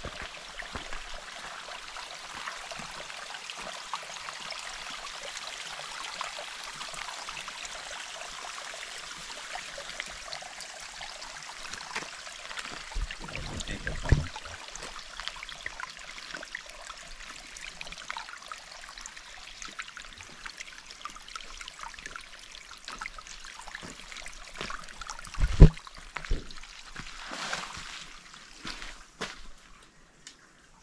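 Small trickle of water running over rocks in a narrow trailside channel: a steady light splashing hiss. Two sudden thumps break in, one about halfway and a louder one a few seconds before the end.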